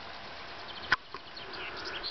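Small birds chirping briefly over a steady outdoor background hiss, with one sharp click about a second in.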